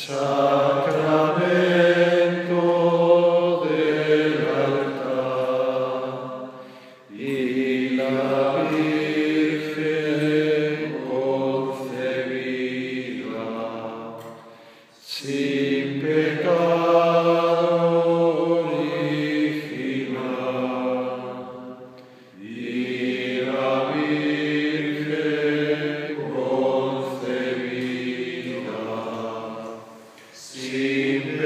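Voices singing a slow liturgical hymn in a chant style, in long held phrases of about seven seconds with short breaks between.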